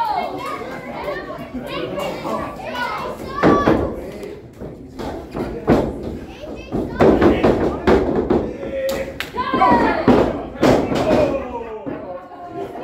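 Spectators' voices, children among them, shouting and calling out, with several heavy thumps from bodies and feet hitting the wrestling ring.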